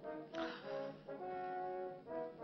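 Orchestral film score: brass holding sustained chords, with a new chord entering about half a second in and another about a second in.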